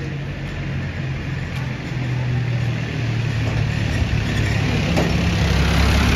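A motor vehicle's engine running, a steady low hum that grows louder toward the end.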